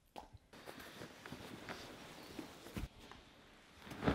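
Faint rustling and soft footfalls as a rolled area rug is pushed open by foot on a hardwood floor, with a single thump near three seconds in.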